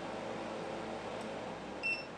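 Steady whir of an EcoFlow R600 Max portable power station's cooling fan, with a single short high beep near the end.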